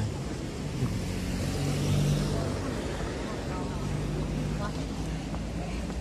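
Road traffic: a car driving past on the adjacent road, its engine and tyre noise swelling to a peak about two seconds in and then fading, over steady street noise with faint voices of passers-by.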